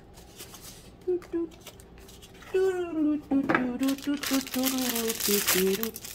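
Foam packing peanuts and cardboard rustling and crinkling as they are handled. From about halfway a woman hums a tune over the rustling, which is loudest near the end.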